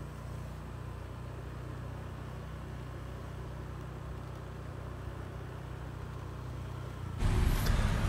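A faint, steady low rumble with nothing else standing out; about seven seconds in it gives way abruptly to louder, brighter street ambience.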